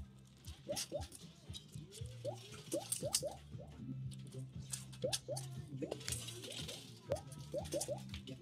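Arcade ambience at a coin pusher machine: a steady low hum with short rising electronic chirps scattered throughout and light sharp clicks.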